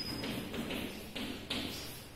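Chalk tapping and scratching on a blackboard while a word is written, in a few short strokes.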